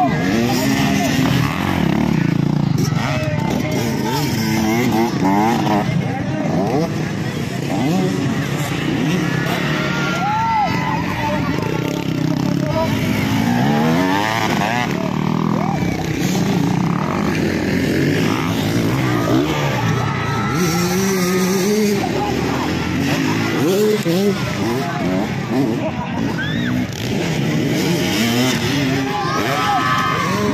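Dirt bike engines revving up and down again and again, with many voices from a crowd throughout.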